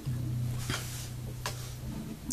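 Electric bass guitar: one low note plucked at the start and left ringing, slowly fading, with a couple of faint clicks partway through.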